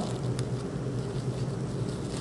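Fabric and netting rustling as a thin ribbon is wound around a gathered handkerchief pouch, a soft steady hiss over a low hum.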